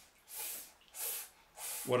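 A voice sounding out the letter S: three short 'sss' hisses about half a second apart.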